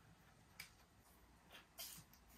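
Near silence broken by three faint small clicks, the last near the end the loudest: a plastic syringe and small glass medicine vial being handled while an injection is prepared.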